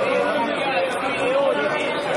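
Many voices talking over one another in a continuous, dense babble, with no single voice standing out clearly.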